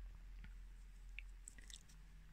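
Faint scratching and a few small clicks of a metal crochet hook pulling polyacrylic yarn through stitches, over a low steady hum.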